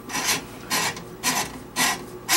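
Steel cable of a drum drain snake scraping as it is fed by hand from the drum into a drain pipe, in four even strokes about two a second.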